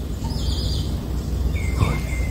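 A bird calling over a steady low background rumble: a short, rough high note about half a second in, then a longer, even whistled note near the end.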